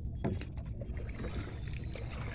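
A small outrigger boat moving slowly through calm water, with faint water sounds and a few light knocks over a steady low rumble.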